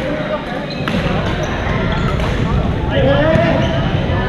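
Busy badminton hall: many indistinct voices overlapping and echoing in the large gym, with scattered sharp knocks from rackets striking shuttlecocks and feet on the court floor.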